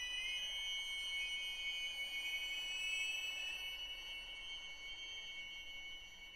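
String quartet holding several high, thin sustained notes together, one of them sliding up a little at the start. The sound fades gradually over the last couple of seconds.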